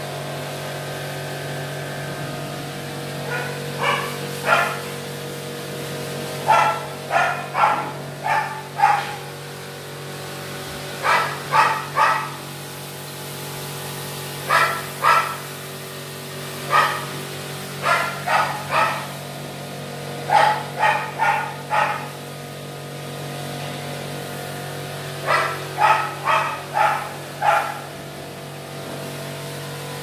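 A dog barking in short runs of two to five barks, about eight times over the stretch, over a steady low hum.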